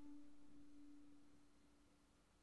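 The last held note of the flute music fading slowly away to near silence.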